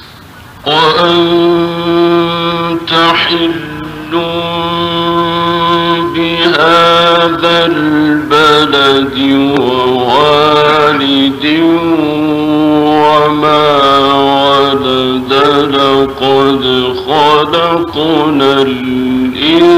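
A male Quran reciter chanting verses in long, ornamented melodic phrases. His voice enters under a second in, after a brief pause, and holds wavering notes with short breaks for breath.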